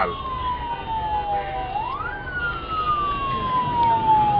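A vehicle siren wailing over traffic rumble. It is a single tone that falls slowly, sweeps up quickly about halfway through, then falls slowly again.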